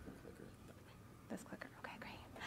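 Very quiet room tone with faint, indistinct whispered voices in the second half.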